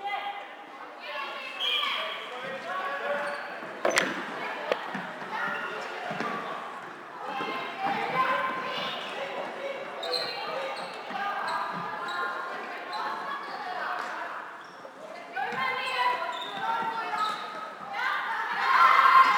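Players' voices calling out across a reverberant sports hall during floorball play, with knocks of sticks and the plastic ball on the court. One sharp crack about four seconds in.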